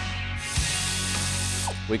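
Hand socket ratchet on a long extension clicking, a single click and then a fast continuous run of ratcheting from about half a second in until just before the end, as fasteners are worked loose on a 6.2 L LT1 V8.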